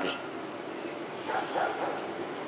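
A faint dog barking, a couple of short barks about a second and a half in, over steady room hiss.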